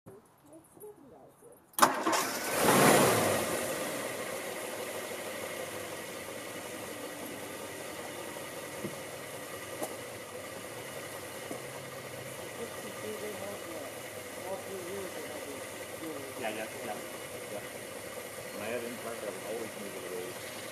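1963 Ford Thunderbird's 390 V8 engine starting: it catches suddenly about two seconds in, flares up briefly, then settles into a steady idle.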